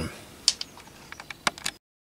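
A few light clicks and taps from a plastic USB plug and cable being handled on a bench. The sound then cuts out completely near the end.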